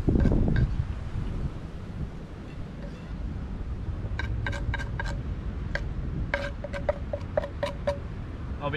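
Metal utensil clinking and scraping against a frying pan as cooked fish is scraped out, a run of light sharp clinks in two clusters, around the middle and near the end. A low wind rumble runs underneath, with a louder gust at the very start.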